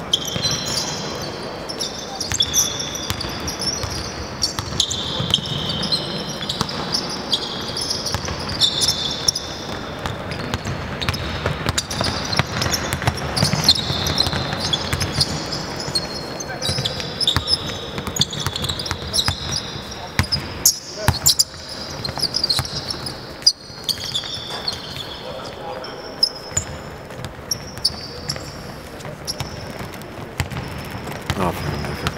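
Indoor basketball game: a basketball bouncing on the hardwood court, many short high sneaker squeaks, and players' voices, all echoing in a large hall.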